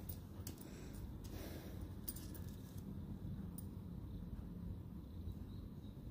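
Faint, scattered light clicks of beads strung on crochet thread and a metal crochet hook as beaded lace is crocheted, over a low steady hum.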